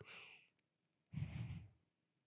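A person taking a faint breath in, then letting out a sigh about a second in, relaxed and contented.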